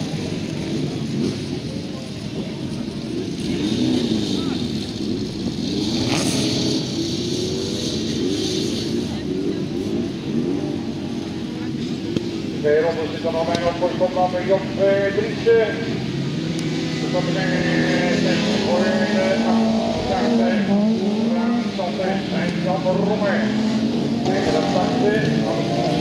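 Autocross race cars' engines revving on a dirt track, their pitch rising and falling again and again as the drivers accelerate and lift off. About halfway through, a car revs higher and louder in several short surges.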